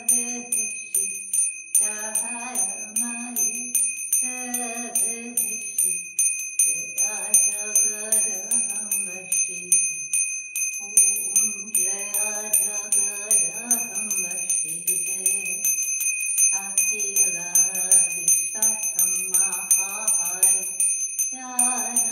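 Small brass hand bell rung continuously with quick, even strokes, its high ring sustained throughout, while voices sing a hymn in phrases with short pauses between them.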